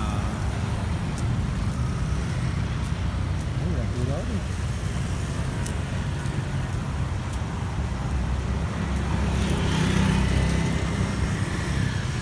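Street traffic: a steady hum of cars and motorbikes on the road. It grows louder as a vehicle passes about ten seconds in.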